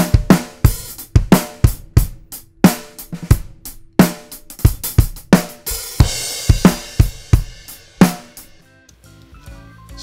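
Playback of a studio drum kit recording: a steady beat of kick drum and snare with hi-hat, a cymbal crash about six seconds in, and a last hit about eight seconds in that rings out.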